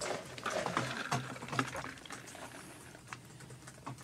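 Soft rustling and scattered light clicks of handling noise at a desk, busiest in the first two seconds and then thinning out.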